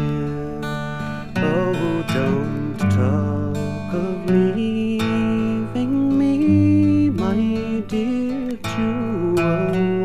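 Acoustic folk recording: strummed acoustic guitar with a melody line playing an instrumental break between sung verses.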